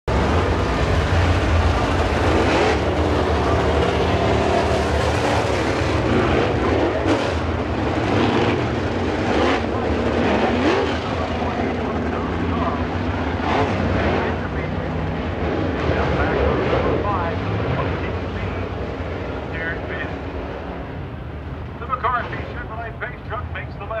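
Engines of a pack of dirt modified race cars running at pace speed behind a pace truck, a steady loud rumble that fades off over the last several seconds. A PA announcer's voice comes in near the end.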